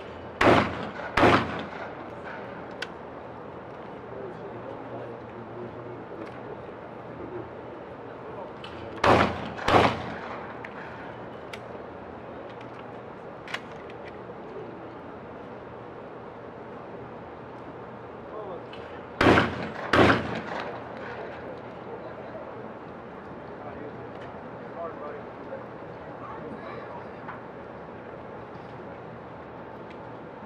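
12-gauge shotguns firing at skeet targets: three pairs of shots, the two shots of each pair well under a second apart and about ten seconds between pairs.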